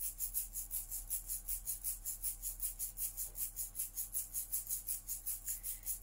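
A steady rhythmic hissing, shaking or rubbing sound at about five strokes a second, over faint sustained background tones.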